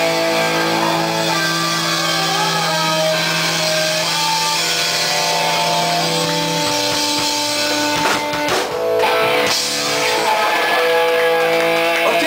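Live rock band playing loudly: Les Paul-style electric guitars holding long ringing notes over a drum kit.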